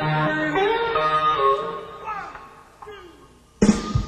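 Live electric blues band: an electric guitar plays sustained, bent notes that fade away. About three and a half seconds in, the full band comes in loudly with bass and drums.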